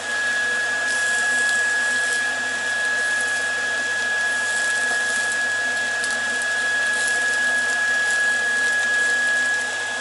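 Beef steaks sizzling in a frying pan, a steady hiss, with a thin high whine running under it.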